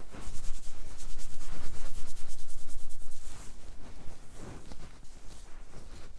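Fingers rubbing briskly through hair and over the scalp in quick, even strokes, loudest in the first three seconds, then softer, slower rubbing.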